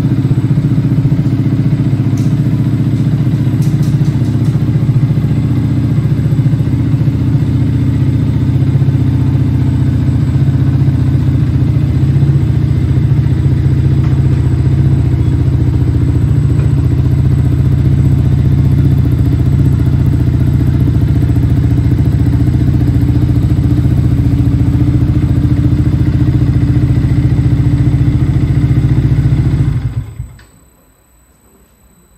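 A 2015 Yamaha MT125's 125 cc single-cylinder four-stroke engine idling steadily through a full Akrapovic exhaust.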